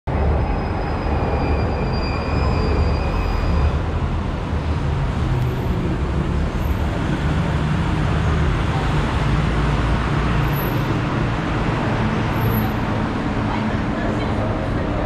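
Street traffic noise under an elevated railway: a steady rumble of passing vehicles, with a faint high whine for a couple of seconds near the start.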